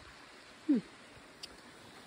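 A person's brief falling "hmm" about two-thirds of a second in, over a faint steady outdoor background hiss.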